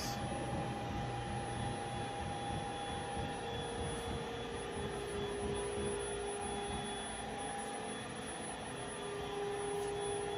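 Steady background machinery hum with a few held tones over an even noise, one tone dipping slightly in pitch about halfway through and rising again near the end.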